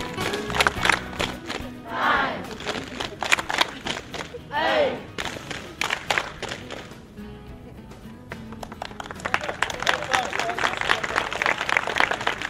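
A group of people clapping, with many sharp claps that come thicker near the end, and voices calling out in two long shouts that rise and fall, over music.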